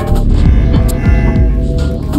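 Upright bass and modular synthesizer playing together: deep low notes that slide down in pitch about three times a second, under steady held higher tones.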